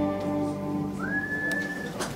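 A live band's last sustained chord, with a harmonium and strings among it, dying away. About a second in, a single high, pure whistled note slides up and holds for almost a second.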